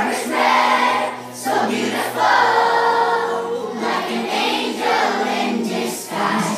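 A children's choir singing together in phrases, with a long held note in the middle.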